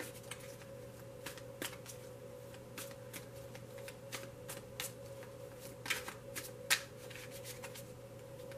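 Tarot cards being handled, with scattered, irregular light clicks and snaps, the sharpest about two-thirds of the way in. A faint steady electrical hum runs underneath.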